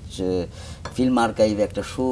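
A teacup clinking against its saucer, with a man speaking over it.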